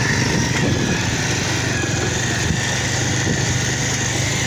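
Motorcycle engine running at a steady speed on the move, a constant low hum under an even hiss of road and wind noise, heard from on a moving bike.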